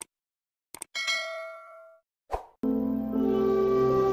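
Subscribe-animation sound effects: a click, then a quick double click, then a bright bell ding that rings out and fades over about a second. A short whoosh follows, and then soft music with sustained tones begins.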